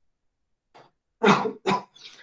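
A man coughing twice in quick succession, the second cough shorter, after a faint short throat sound.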